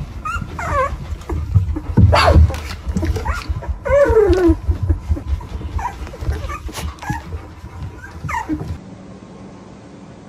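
Young golden retriever puppies whimpering and squealing: several short calls, the longest sliding down in pitch about four seconds in, over a low rustling rumble that stops near the end.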